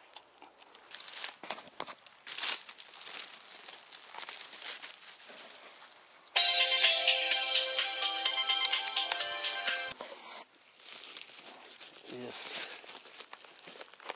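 Rustling and crackling of twigs and forest litter, broken from about six seconds in by some four seconds of loud music that starts and stops abruptly.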